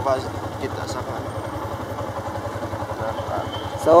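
A motorcycle engine idling, a steady low pulsing rumble, with faint voices over it.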